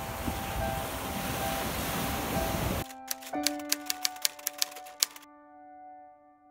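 Surf washing onto a sandy beach over soft piano music. About three seconds in, the surf cuts off and a quick run of about a dozen typewriter key clicks sounds over held piano notes, which then fade.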